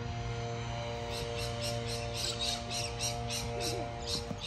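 Happy, upbeat background music with steady held notes; about a second in, a quick regular run of high ticks joins in, about four or five a second.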